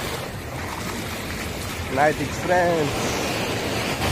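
Sea surf breaking on a beach, a steady rushing noise, with wind on the microphone. A short vocal sound from a man breaks in twice around the middle.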